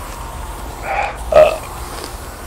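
Two short voiced sounds from a man about a second in, the second one loud, burp- or grunt-like rather than words, over a steady low rumble.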